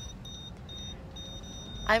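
Faint high-pitched electronic beeping, two tones sounding together and cutting on and off several times, over the low steady rumble of a car's cabin.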